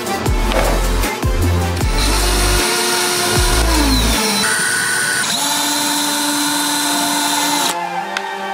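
Cordless power drill running, boring through a stack of paper, in two stretches with a spin-down between them, over electronic background music.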